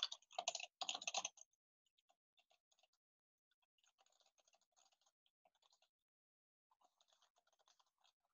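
Typing on a computer keyboard: a louder run of keystrokes in the first second and a half, then faint, scattered clusters of keystrokes.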